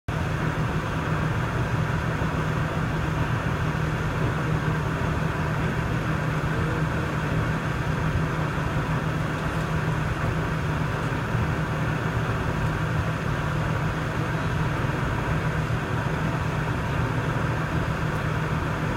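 Steady cabin noise inside an Air India Airbus A321 on the ground before takeoff: an even, low hum of the engines and air-conditioning that holds the same level throughout.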